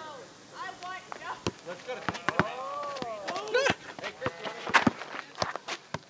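A basketball being kicked and bounced off feet and asphalt, an irregular string of sharp thuds, with voices calling out over it.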